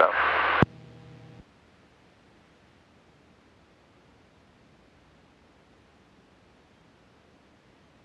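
Aircraft radio/intercom hiss at the tail of a transmission, cutting off with a click under a second in. A faint steady hum follows for about a second, then only near silence with faint hiss.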